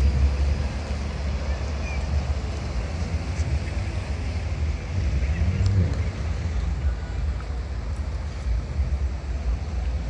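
Traffic on a rain-wet street: cars passing with steady road noise and a low rumble, one engine rising in pitch as it goes by about halfway through.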